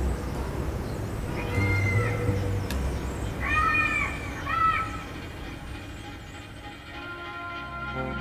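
Three short wavering animal calls, meow-like, over a low rumble that fades away after the calls. Music with held notes comes in near the end.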